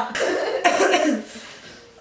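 A woman laughing hard in two breathy bursts that die away after about a second.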